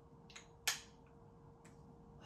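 Perfume packaging and a glass perfume bottle being handled: a few light clicks and taps, the sharpest about two-thirds of a second in.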